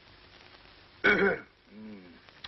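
A man's wordless vocal sounds over faint soundtrack hiss: about a second in, a loud, short throat-clearing grunt, then near the end a softer, lower grunt.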